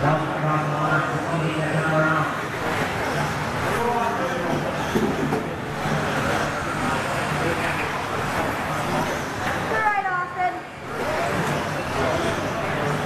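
Race announcer's voice over a PA in a large echoing hall, mixed with electric 2WD RC buggies running on the track. A falling whine comes about ten seconds in.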